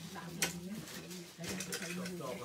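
Low, steady monotone chanting by a group of voices, with a single sharp click about half a second in.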